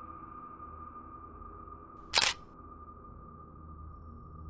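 A steady high-pitched drone tone over a low hum, the background bed of an edited video, with one short sharp snap about two seconds in, the sound effect of the cut to the next segment's title card.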